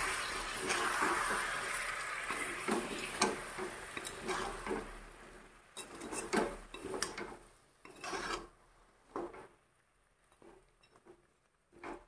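A perforated metal spoon stirs and scrapes chicken feet in a thick, wet masala in a metal kadhai, with repeated metal-on-metal scrapes and knocks that grow sparser and quieter near the end. Over the first few seconds a hiss dies away as the water just added sizzles in the hot pan.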